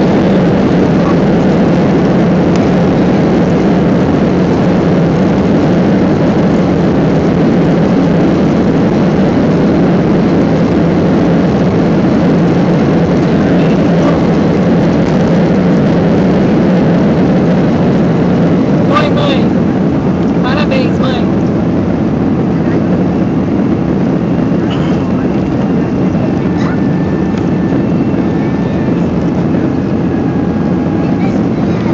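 Jet engines at takeoff thrust with a steady, loud rumble from the runway, heard inside the cabin of a Boeing 767-200 during its takeoff roll. A few sharp knocks come about two-thirds of the way through, around liftoff. After that the rumble eases a little and a faint steady whine sets in near the end.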